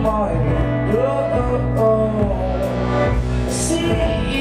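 Live danceable indie pop band playing: a singer's melody over drums, bass and keyboard.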